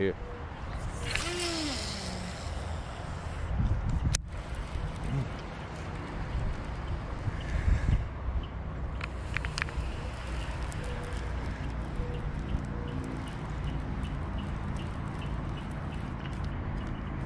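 Wind buffeting the microphone, with a few sharp clicks from handling the baitcasting rod and reel about nine to ten seconds in.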